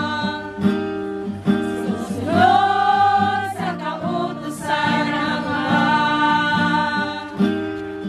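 A religious song sung in Tagalog, with instrumental accompaniment and long held sung notes.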